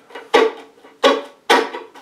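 Violin played with short, percussive bow strokes in a chopping rhythm: three sharp strokes a little over half a second apart, each a sudden attack followed by a brief note.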